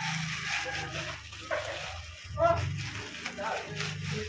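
Plastic courier mailer bag crinkling and tearing as it is pulled open by hand.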